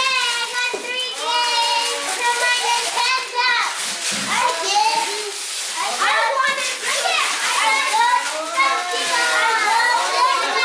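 Several children's excited high voices squealing and exclaiming at once, with wrapping paper rustling and tearing off gifts.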